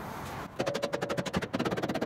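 Rapid, even run of sharp knocks, about ten a second from about half a second in and quickening near the end: a new hyfax slider being pounded onto the aluminium rail of a Ski-Doo rMotion skid.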